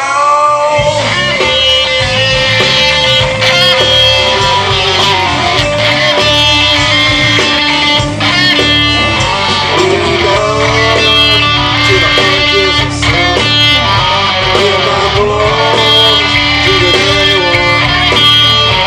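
Live country-rock band playing an instrumental break: a lead electric guitar line with bent, sliding notes over drums, bass and rhythm guitar.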